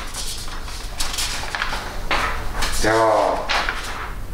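Sheets of paper rustling and crinkling in several short bursts as they are handled and leafed through.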